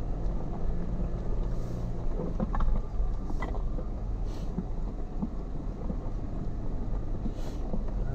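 Jeep Wrangler Unlimited Rubicon's 3.6-litre V6 running steadily at low trail speed while its 35-inch Nitto Ridge Grappler tyres roll over loose gravel and rock, a low rumble broken by a few sharp ticks of stones.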